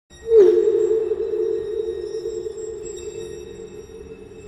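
Horror-film score drone: a single low sustained tone that comes in sharply out of silence, dips slightly in pitch at its start, then slowly fades.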